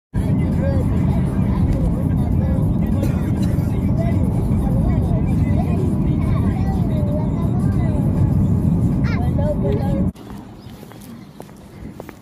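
Road and engine rumble from inside a moving car, loud and steady, with a voice heard over it. The rumble cuts off suddenly about ten seconds in.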